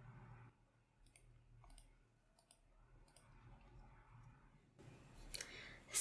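Faint computer mouse clicks, a handful scattered over several seconds against near silence.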